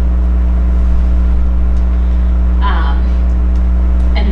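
Loud, steady low electrical hum in the recording's sound, a deep drone with a fainter higher tone above it, typical of mains hum picked up in the audio feed. A voice speaks briefly and faintly a little past halfway.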